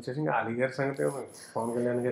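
A man speaking in an interview, with a short pause a little after a second in.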